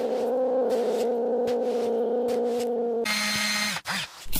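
A cat's long, low yowl, held at a steady pitch. About three seconds in, a bright mechanical whir comes in over it for under a second and cuts off abruptly.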